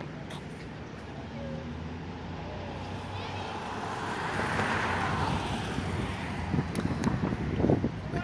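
Road traffic: a vehicle goes by, its noise swelling to a peak about halfway through and then fading, over a steady low hum.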